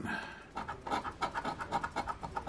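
Coin scraping the scratch-off coating off a lottery ticket: a quick run of short scratching strokes.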